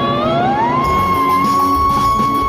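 A woman singing a wordless operatic vocalise: her voice glides up about an octave in the first second into a high note that she holds steady, over backing music.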